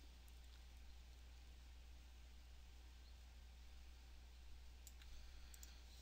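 Near silence: a steady low electrical hum with a few faint computer mouse clicks, mostly near the end.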